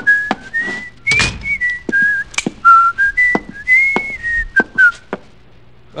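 A man whistling a tune, a run of notes stepping up and down that ends about five seconds in, with sharp knocks and clicks in between.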